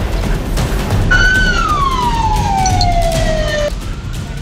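A fire engine siren sounds one wail that rises briefly, then falls slowly in pitch for about two and a half seconds before cutting off abruptly near the end, over a steady low rumble.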